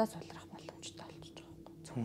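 Soft, breathy speech close to a whisper, with little voiced sound, over a faint steady hum.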